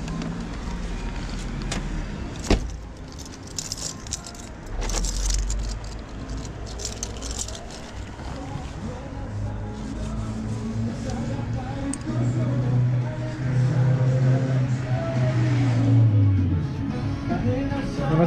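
A car door shuts with a sharp thud about two and a half seconds in, followed by a few seconds of rustling and clinking as the delivery bag is carried. Background music comes in near the end.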